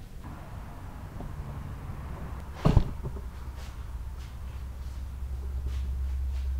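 A single sharp clack of a magnetic PVC toilet-flange dust-hose connector snapping together, a little under halfway through, amid hose-handling noise. A steady low hum follows and cuts off suddenly near the end.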